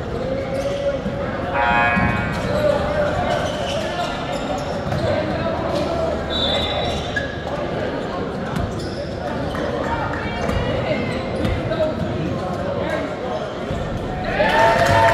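Basketball bouncing on a hardwood gym floor during live play, with players' and spectators' voices echoing in the large hall.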